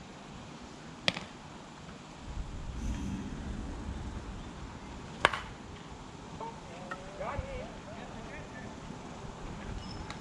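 Softball bat striking the ball with one sharp crack about five seconds in, a ball put into play. A similar sharp knock comes about a second in, with faint voices calling out after the hit.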